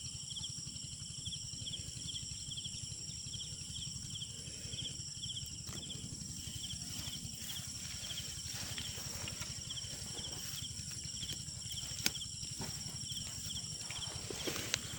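Insects calling: a high chirp repeated about two or three times a second over a steady high-pitched drone, with a low rumble underneath. A single sharp click sounds near the end.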